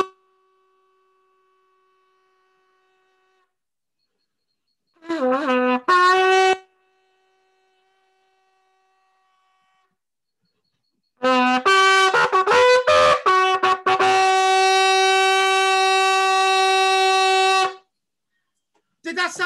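A small brass bugle blown in two calls: a short call of a low note rising to a higher one about five seconds in, then from about eleven seconds a run of short notes ending in one long held note that stops just before the end.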